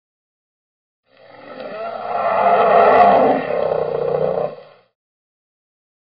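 A roaring sound that swells up about a second in and fades away after nearly four seconds.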